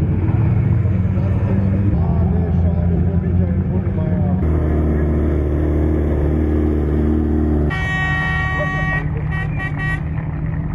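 Race buggy engine running at low revs, with a voice in the background. Near the end a horn sounds one long blast of a little over a second, then several short toots.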